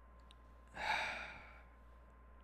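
A man's sigh: one breath out, a little under a second long, about a second in, loudest at its start and trailing off.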